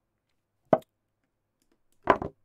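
A single short, sharp click about three quarters of a second in: the move sound of an online chess board as a piece is played.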